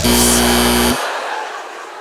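A loud buzzer sounds once for about a second and cuts off abruptly, marking the end of an improv scene. Audience laughter follows and fades away.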